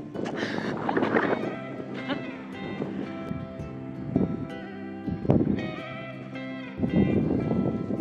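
Background music with sustained notes, broken at times by gusts of wind noise on the microphone.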